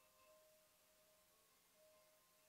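Near silence, with faint steady musical tones held and changing softly, as of quiet music far off.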